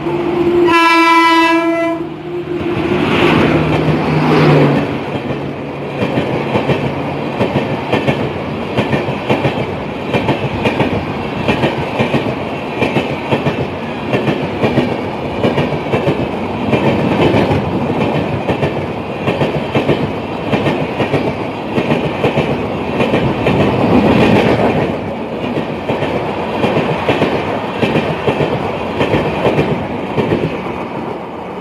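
Locomotive horn sounding briefly about a second in. Then an Indian Railways express train passes at speed: a continuous rush and rumble of coaches, with the clickety-clack of wheels over the rail joints.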